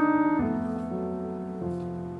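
Piano playing slow, held chords in the introduction of a jazz ballad, a new chord struck about half a second in and another past halfway, each left to ring and fade.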